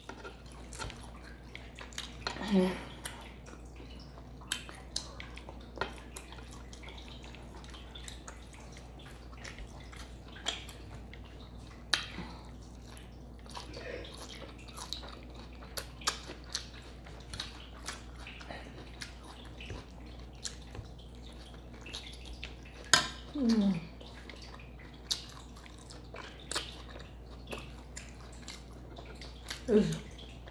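Close-miked chewing of steak and salad: wet mouth clicks and lip smacks scattered throughout, with two brief falling hums from the eater, one near the start and one near the end.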